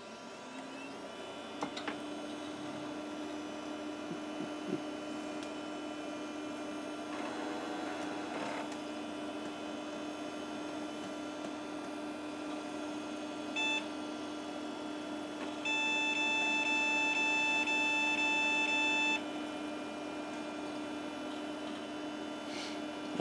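Packard Bell desktop PC powering up: the fan and hard drive spin up with a hum that rises in pitch and settles into a steady drone, with the drive seeking now and then. About 14 s in the PC speaker gives a short POST beep, then a second, longer beep of about three seconds.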